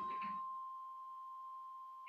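A Tibetan hand bell's lingering ring: one faint, steady, clear tone.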